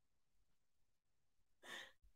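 Near silence, with one short, faint breath near the end.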